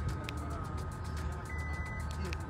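Kia Grand Carnival power sliding door opened from the smart-key remote: a faint click near the start, then the door's high warning beep sounds about one and a half seconds in, signalling the door is moving.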